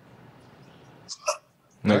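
Faint room tone from the press-conference microphones, broken about a second in by a brief vocal noise like a short breath or catch in the throat, then a man begins to speak near the end.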